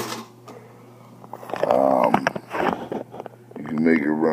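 Singer 239 sewing machine winding down at the start, then run very slowly, with a low steady buzz from its motor. A few light mechanical clicks come in the second half, with a brief voice near the middle.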